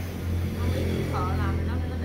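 A steady low hum, with a faint voice briefly in the background about a second in.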